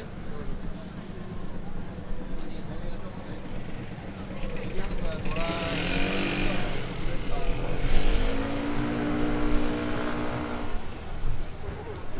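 A small motor scooter's engine passing close by, starting about halfway in: its note rises as it pulls away, then holds steady for a couple of seconds before fading near the end. Underneath runs a steady hum of city street traffic.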